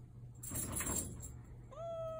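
A restrained cat meowing once: a long, level call that starts near the end, after a brief burst of rustling noise about half a second in.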